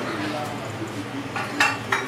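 A wire whisk beating seasoned raw eggs in a stainless steel mixing bowl. Quick clinking and scraping strokes against the bowl start about one and a half seconds in.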